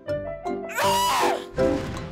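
A young woman lets out a loud, drawn-out, whiny cry of frustration with a bending pitch, about a second in, over background music.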